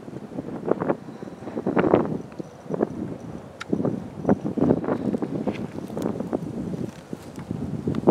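Gusty wind buffeting the microphone in irregular surges that rise and fall.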